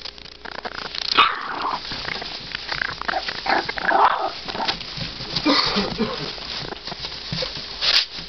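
Several three-week-old American bulldog puppies whining, with short calls that rise and fall in pitch, over the rustle of the shredded paper bedding they crawl through.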